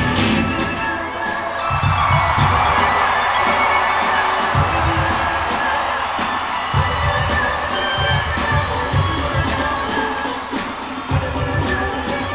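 Live rock band playing amplified electric guitar, bass and drums, with crowd cheering that swells in the first few seconds and fades by the middle. Bass notes come in short intermittent runs.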